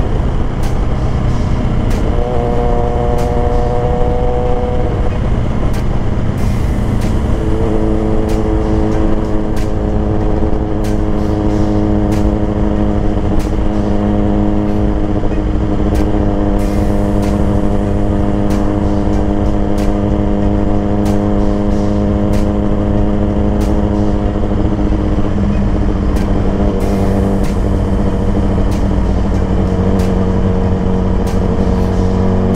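Suzuki GSX-R sport bike's engine running while the bike is ridden, heard from the rider's seat over steady wind rush. The engine note changes pitch a few times in the first several seconds and near the end as the speed and gear change, and holds steady in between.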